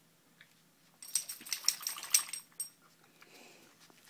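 Metal dog collar tags jingling in a quick, clinking burst as a dog moves about, starting about a second in and lasting under two seconds.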